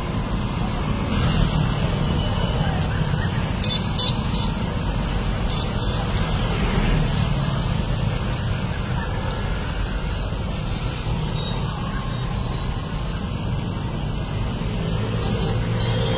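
Steady street traffic noise from passing vehicles, with a few short horn sounds.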